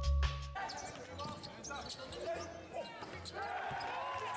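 Music with a heavy beat cuts off about half a second in. After it comes the sound of a basketball game in a large gym: the ball bouncing on the hardwood court, short squeaks and voices.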